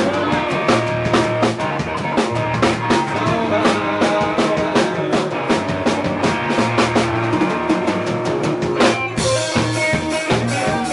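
A live rock band playing an instrumental passage: distorted-free electric guitar over a busy drum-kit groove with dense snare and cymbal hits. About nine seconds in, the cymbals open into a steady, ringing wash.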